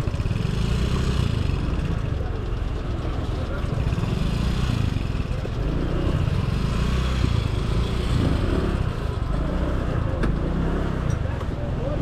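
Motor scooter running at a crawl, just a few km/h, with a steady low rumble.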